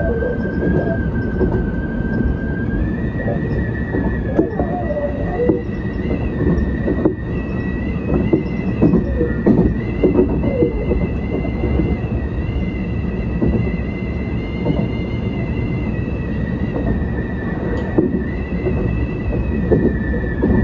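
Tobu 10050 series electric train running at speed, heard from inside the front cab: a steady low rumble of wheels on rail with irregular clicks and knocks. A steady high whine runs throughout and rises slightly in pitch about three seconds in.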